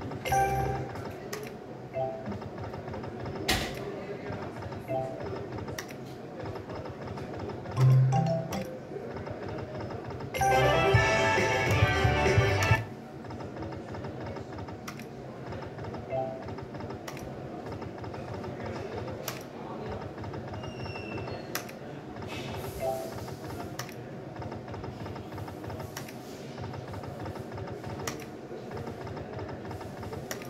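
Online slot machine game sounds: a steady looping game tune with short chiming blips and sharp clicks of the spin button being pressed. About a third of the way in a louder, busier burst of game jingle plays for a little over two seconds.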